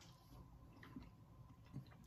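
Near silence with faint chewing and a few small mouth clicks as a mouthful of food is eaten.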